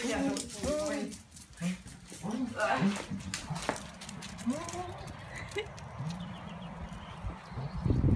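Two dogs moving about on tile and concrete, their paws and claws patting on the hard ground, with short vocal sounds and a soft voice now and then.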